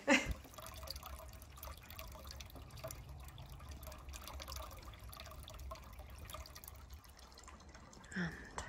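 Small solar-powered water feature trickling and dripping into a ceramic frog bowl, faint and irregular, over a steady low rumble.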